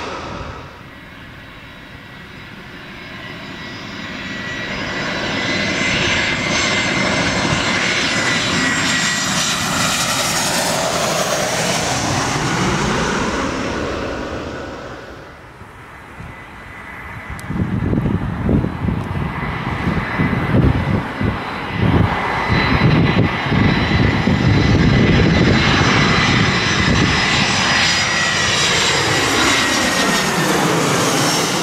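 Twin-engine jet airliners passing low on approach with landing gear down. The turbofan roar builds to a steady peak and dips briefly about halfway through. Then a closer pass overhead brings a louder, rough, fluttering rumble with a steady engine whine above it.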